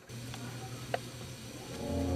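A low steady hum with a few faint clicks, one sharper about a second in. Near the end, background music with a deep bass note fades in.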